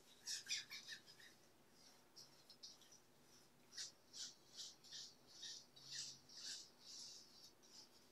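Faint, soft dabs of a small brush stippling resin into fiberglass cloth on a mold, a few near the start and then a run of about two a second in the second half, working the resin through the cloth.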